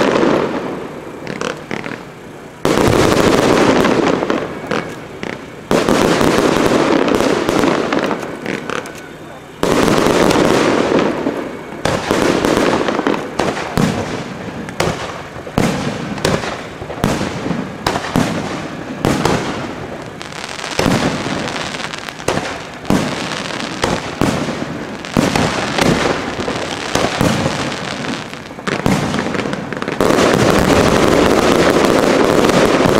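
Aerial fireworks shells bursting: four loud bursts in the first ten seconds, each starting suddenly and lasting a couple of seconds, then a rapid, unbroken string of bangs and crackles.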